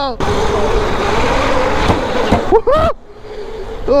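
A 72-volt Sur Ron-converted electric go-kart being driven, heard as a loud steady rushing noise with a faint wavering motor whine that drops away just before three seconds in. Just before the drop comes a short shouted 'oh' that rises and falls.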